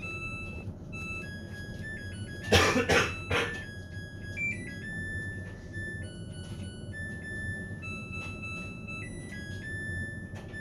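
A person coughs three times in quick succession about two and a half seconds in, over quiet background music of held electronic notes and a low steady hum.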